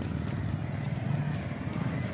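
Steady low rumble of a moving motor vehicle's engine and road noise, heard from on board.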